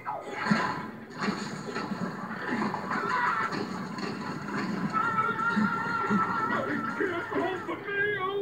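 Cartoon movie soundtrack music mixed with sound effects, played on a television and picked up from its speaker.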